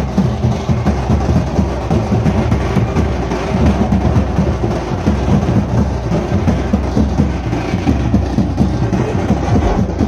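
Loud, fast drumming that keeps going without a break, with a crowd underneath.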